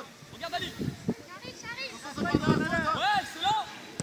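Several high-pitched voices shouting and calling out, loudest from about two to three and a half seconds in.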